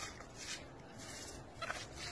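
A brush scrubbing wet, soapy cloth on a ribbed washing slab in a few quick, uneven strokes.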